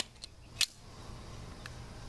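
A few small, sharp clicks over a low steady background, the loudest at the very start and just over half a second in: handling noise from a phone and its battery.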